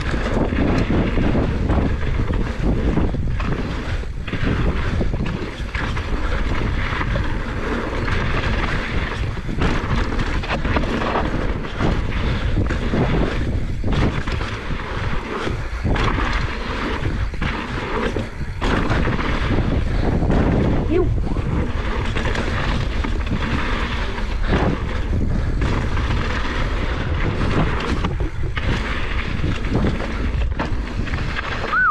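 Wind buffeting the camera microphone over a mountain bike's tyres rolling fast on a loose gravel trail, with frequent knocks and rattles from the bike over bumps.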